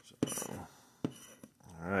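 A plastic scratcher tool scraping the coating off a scratch-off lottery ticket in short strokes, with two sharp taps as it strikes the card.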